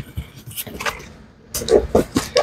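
Small cardboard shipping box being handled and set down on a desk: a few light knocks and scrapes in the first second, then quiet.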